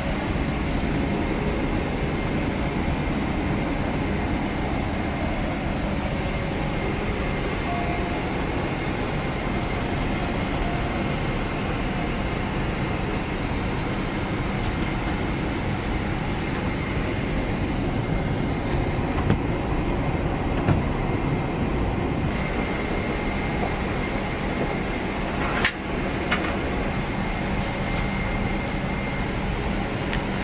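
Steady rushing cabin noise from a Boeing 777-300ER airliner's air-conditioning, with a faint steady whine over it. A few light knocks come in the second half.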